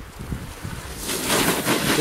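Snowboard edge scraping across packed snow: a hiss that swells from about a second in as the rider carves to a stop and sprays snow at the microphone, over a low rumble of wind on the microphone.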